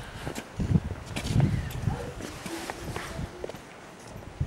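Footsteps on a handheld camera's microphone, heard as irregular low thuds, with faint distant voices in the middle.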